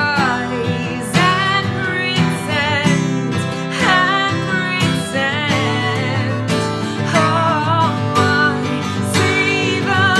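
A woman sings a song's outro chorus loudly, with vibrato, to her own strummed acoustic guitar.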